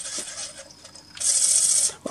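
Naim NAC D3 CD transport spinning a disc with the cover off: a faint steady whine, then, just past a second in, a short hissing rub lasting under a second. The rub is the sign of the disc slipping on the turntable because its light magnetic puck does not clamp it hard enough.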